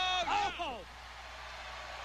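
A commentator's drawn-out, falling "oh", then a steady wash of arena crowd noise under the TV broadcast.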